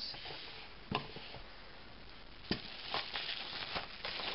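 Bubble wrap and a cardboard box being handled as a package is unwrapped. Faint rustling and crinkling with a few sharp taps, the clearest about a second in and again about two and a half seconds in.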